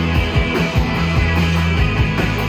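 Live rock band playing loud: distorted electric guitars over a held bass line and steady drum hits.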